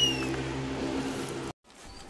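A cartoon-style sound effect: a whistle-like tone that has swept upward levels off and fades within the first half second, over a held low chord that cuts off abruptly about one and a half seconds in. Faint outdoor background follows.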